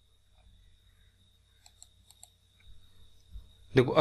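A few faint, short clicks, three close together about two seconds in, over a low electrical hum and a faint steady high whine. A man's voice starts just before the end.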